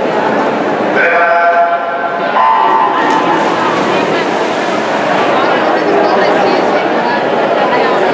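A swimming race's electronic start signal sounds as one steady tone about a second in, over a crowd cheering and shouting in an echoing indoor pool hall. The cheering carries on as the swimmers dive in.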